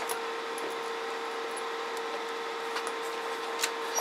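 Steady electrical hum and whir of a radio test bench, with a few faint clicks of a microphone being handled and swapped.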